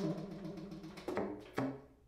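Solo baritone saxophone: a hard-attacked low note whose pitch wavers rapidly, then two more sharply attacked notes about a second in and near the end, the last one lower.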